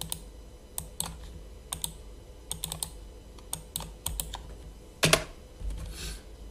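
Computer keyboard being typed on: irregular key clicks, some in quick runs, with one louder click about five seconds in.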